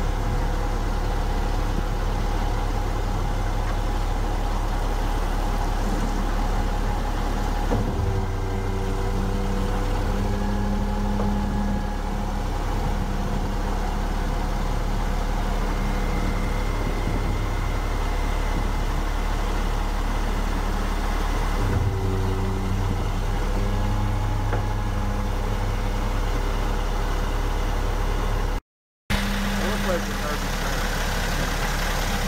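Refuse truck's engine idling steadily. Its tone shifts about eight seconds in and again about twenty-two seconds in, and the sound breaks off briefly near the end.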